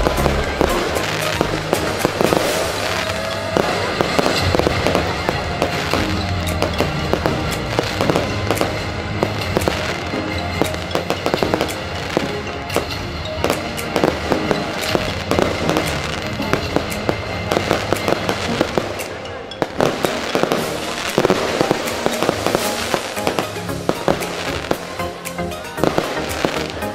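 Aerial fireworks bursting and crackling in rapid, continuous succession, several bangs a second, with music playing underneath.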